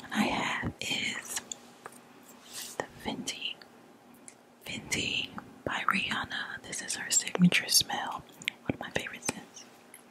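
Soft ASMR whispering close to the microphone, with many small sharp clicks and taps in between, thickest in the second half, as a glass perfume bottle is handled near the mic.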